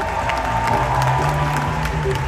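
Live band playing softly underneath, a held high note over bass notes, while the theatre audience applauds.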